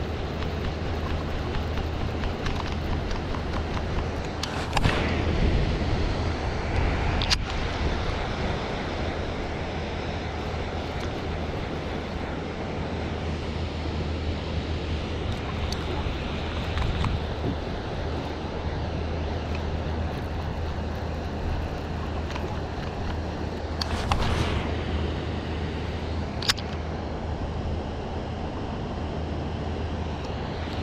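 Two casts with a baitcasting rod and reel, each a quick swish followed a couple of seconds later by a sharp tick, over a steady low rumble.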